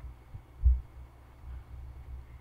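Steady low hum with soft, irregular low thumps, one clearly louder about two-thirds of a second in.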